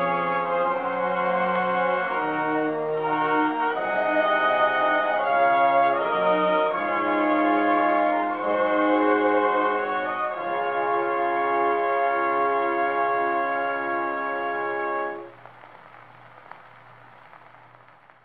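Orchestral closing bars of a 1925 Victor shellac 78 rpm record, played acoustically through the horn of an EMG Mark IX gramophone, ending on a held chord about fifteen seconds in. After that only the record's faint surface hiss remains, with one click, fading away at the end.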